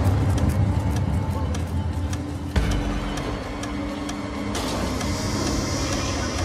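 Carousel slide projector clicking rapidly, about four clicks a second, as its tray advances, over a steady low hum. A sharp knock comes about two and a half seconds in.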